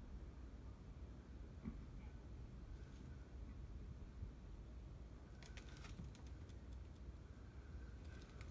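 Near silence: a low steady room hum, with a few faint light clicks about five and a half seconds in.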